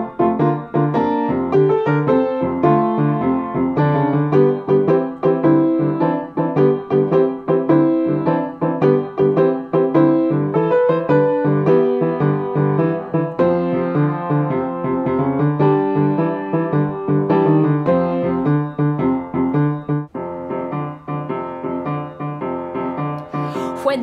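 Piano music, a continuous run of notes that grows softer over the last few seconds.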